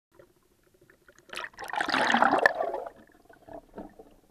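Sea water splashing and gurgling over the camera as a spearfisher duck-dives beneath the surface, a loud rush in the middle that dies away into a few soft underwater knocks.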